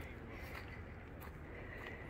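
Quiet outdoor background with a steady low rumble on the microphone and a few faint ticks.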